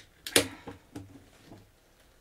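A beer can's pull tab snapping open with one sharp click about a third of a second in, followed by a few faint soft knocks of cans being handled.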